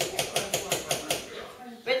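A spoon beating cake batter in a mixing bowl: rapid, even clicks, about seven a second, that stop a little after a second in.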